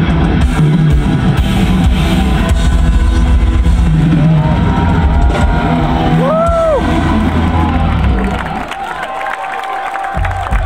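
Heavy metal band playing live on a festival stage, with distorted guitars, drums and bass heard from the audience. The song winds down and the loud music drops away about eight seconds in, leaving a lower wash of crowd and stage sound.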